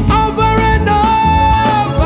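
Live gospel band playing, with drums, bass and keyboards under a singing voice that holds one long note.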